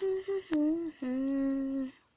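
A person humming a short falling tune. Two brief notes come first, then a wavering lower note, then a long low note held for about a second.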